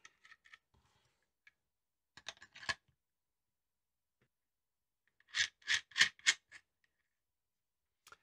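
Small metal and plastic rig parts clicking as a cold shoe adapter and wireless HDMI transmitter are fitted onto a camera cage: a brief run of quick clicks about two seconds in, and a louder run of five or six clicks around five and a half seconds in.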